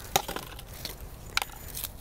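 A coleus being pulled out of its flexible black plastic nursery pot, the pot and root ball giving a few sharp crackles and clicks.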